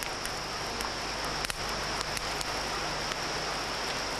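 Steady hissing background noise with a thin high steady whine and scattered faint clicks and crackles.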